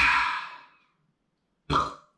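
A man's loud, wordless vocal outburst that fades over most of a second, then a second, shorter one near the end.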